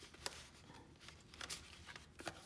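Faint handling of paper and cardstock: soft rustling with a couple of light taps as layered tags are drawn out of a paper pocket.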